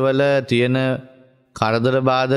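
A Buddhist monk's voice chanting on a steady, level pitch, breaking off a little under a second in and resuming about half a second later.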